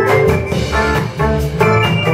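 A small live band playing: electric organ, electric guitar and electric bass. The long held organ chord breaks off at the start, and shorter notes over a steady beat carry on, with a brief drop in loudness a little past the middle.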